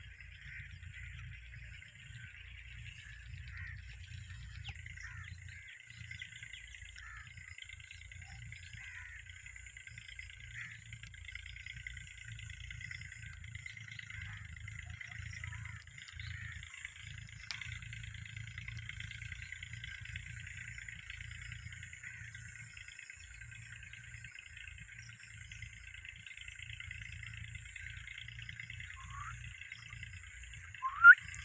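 Faint, continuous chorus of many small birds chirping, with a few brief separate calls, over a steady low rumble.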